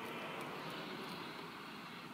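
Steady background vehicle noise heard inside a parked car, with faint soft sounds of biting into and chewing a sandwich.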